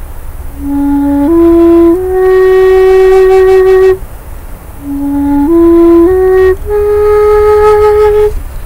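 End-blown wooden flute in D diatonic minor, playing two short rising phrases of clean single notes. Each phrase ends on a long held note: the first of three notes, the second of four notes after a brief pause. The phrases step up the pentatonic minor, played with the flute's smallest hole kept closed.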